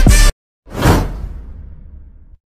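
Electronic background music that cuts off abruptly, then after a brief gap a single whoosh sound effect that swells quickly and fades away slowly, the swoosh of an animated subscribe-button graphic.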